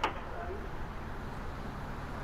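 Steady low rumble and hiss picked up by a doorbell camera's microphone at night. A sharp click comes at the very start, and a faint voice is heard briefly about half a second in.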